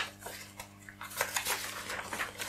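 Thin pages of thick Bibles being leafed through by hand: a quick run of crisp flicks and rustles, busier in the second half, with a sharp click at the start.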